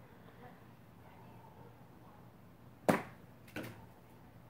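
A golf club strikes a golf ball once, a sharp click about three seconds in, followed under a second later by a fainter knock.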